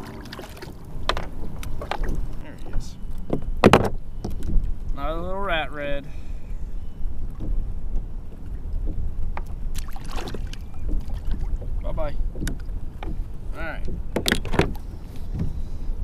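Knocks and clunks of handling against a fishing kayak's hull, several sharp ones spread through, over a steady low rumble of wind and water on the microphone. A short wordless vocal sound comes about five seconds in.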